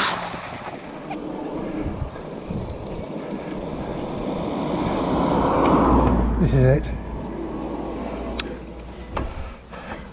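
A road vehicle passing close by on the road alongside: its noise builds over several seconds to a peak about six seconds in, then falls away.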